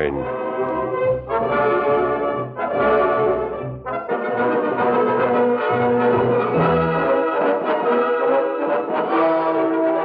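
Orchestral music bridge led by brass: a few short phrases, then a fuller passage ending on a long held note, marking a scene change in the radio drama.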